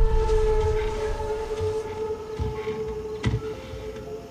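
Trailer sound design: a held, horn-like droning tone that slowly fades over a low rumble, with a short low hit about three seconds in.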